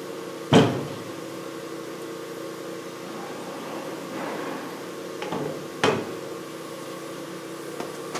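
Steel parts clanking as a connecting rod and the press tooling are picked up and set down on a shop press's steel plate. There is a sharp clank about half a second in, a softer shuffle, and two more clanks near the six-second mark, over a steady low hum.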